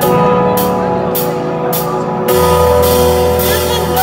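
A live rock band playing the slow intro of a song: a held chord over steady cymbal strokes, just under two a second. A deep bass comes in a little past halfway.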